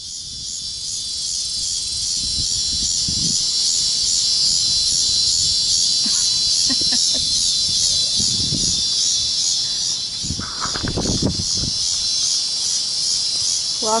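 Loud, steady chorus of summer insects, a high-pitched buzz with an even pulsing texture, broken by a few low rumbles.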